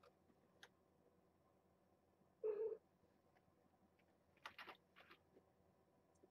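A young kitten mews once, a short call about two and a half seconds in, against near silence. A few faint clicks follow near the end.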